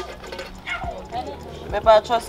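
Faint talking in the background, with a louder voice briefly near the end.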